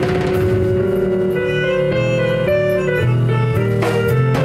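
Live band playing: a sustained lead melody over bass and drum kit, with a cymbal crash near the end.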